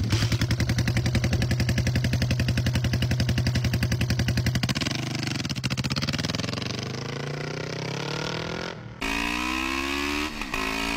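Custom cafe racer motorcycle's engine idling with a steady, rapid beat, a quick blip of the throttle about five seconds in, then pulling away with the pitch climbing. Near the end the engine is heard under way, its note rising steadily.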